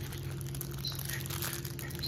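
Plastic packaging crinkling as it is handled and pulled open, over a steady low hum.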